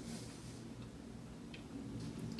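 Quiet room tone with a faint steady low hum and two faint ticks, the first almost a second in and the second near the end.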